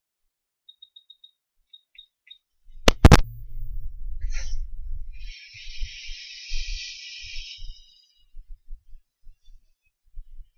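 Short high beeps in a quick series, then a few more, from the Quick 861DW hot air rework station's buttons as its settings are changed; about three seconds in comes a loud clack as the hot air handpiece is picked up, followed by low handling thumps and a hiss of a couple of seconds.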